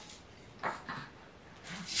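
A quiet pause with the baby shaker held still: faint room tone broken by a couple of brief, soft sounds, the clearest about two-thirds of a second in.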